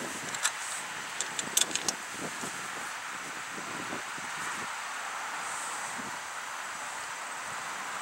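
Several light clicks in the first two seconds as a battery load tester's clamp and lead are handled on a car battery, then a steady background hiss.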